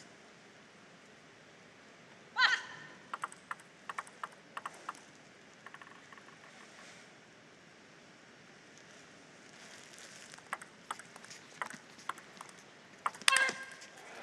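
Celluloid-type table tennis ball tapping on the table and paddle: scattered light clicks over several seconds with a lull in the middle, and a louder ringing ping about two seconds in and again near the end as play gets under way.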